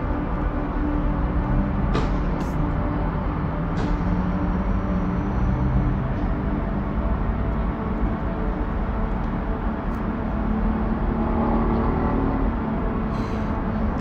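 A steady low rumble with a faint hum, broken by a few soft clicks early on.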